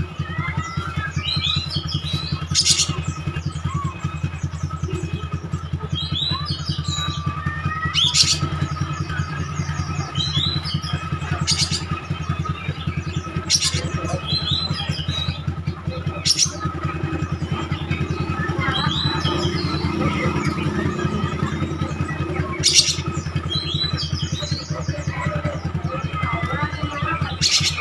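Oriental magpie-robin singing in short repeated phrases of chirps and whistles every couple of seconds, with a sharp high note now and then, over a steady low hum.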